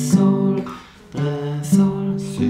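Acoustic guitar playing three-note G major triad shapes through their inversions, one chord at a time. Three chords are plucked: the first rings and fades almost away, the second comes about a second in, and the third comes shortly before the end.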